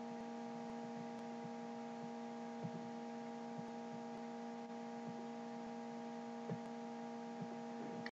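Low, steady electrical hum made of several fixed tones, with a few faint scattered ticks.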